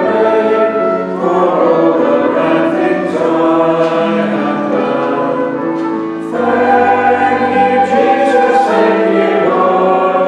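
A church congregation singing a worship song, led by singers at the microphones over a sustained keyboard accompaniment, with a short break between phrases about six seconds in.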